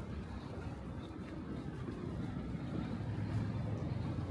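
Low, steady rumble of outdoor city ambience, most likely distant traffic, growing a little louder in the second half.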